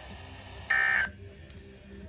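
A short burst of warbling SAME digital data tones, the end-of-message code that closes a NOAA Weather Radio broadcast, heard through a Midland weather alert radio's speaker. It comes once, about two-thirds of a second in, over faint receiver hiss.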